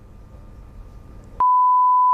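Faint room tone, then, about a second and a half in, a single steady high censor bleep starts. All other sound is muted beneath it, masking a spoken answer, and it runs on past the end.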